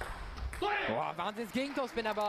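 A table tennis ball struck once right at the start as a rally ends, then a voice calls out for about a second and a half.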